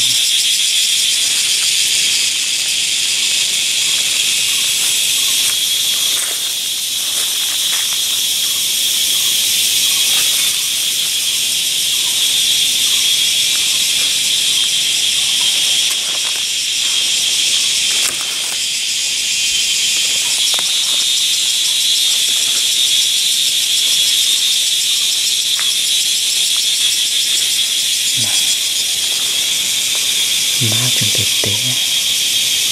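Loud, steady, high-pitched buzzing chorus of cicadas, with a few faint snaps and rustles of undergrowth.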